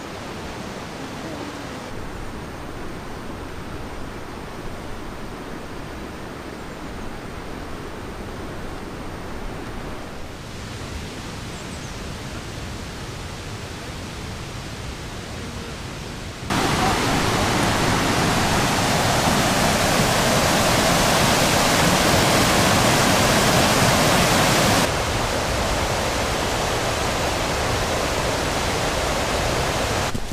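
Steady rushing of a fast-flowing river and burn, a continuous hiss of water that jumps much louder about halfway through for some eight seconds, then settles back to a moderate level.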